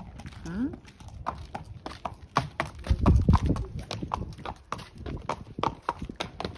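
An Arabian horse's hooves striking hard ground in a quick, uneven clip-clop as it is led along at a lively walk. A brief voice sounds near the start, and a low rumble comes about three seconds in.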